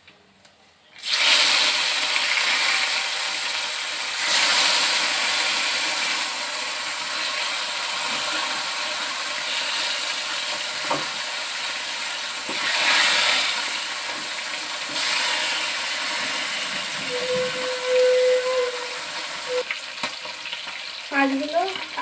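Hot oil sizzling loudly in a frying pan as pieces of food go in. It starts suddenly about a second in and swells a couple of times.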